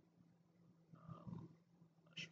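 Near silence: faint room tone with a low steady hum, and a brief faint sound about a second in.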